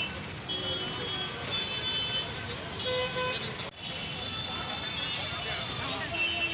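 Street traffic with car horns sounding several times in short steady blasts, over background voices of a crowd.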